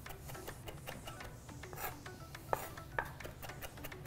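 Chef's knife finely chopping fresh parsley on a wooden cutting board: quick, light, uneven taps of the blade against the board, with a couple of sharper knocks in the second half.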